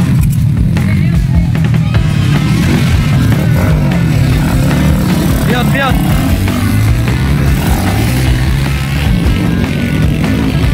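Motorcycle engine revving hard, its pitch rising and falling again and again as the bike is ridden through deep mud.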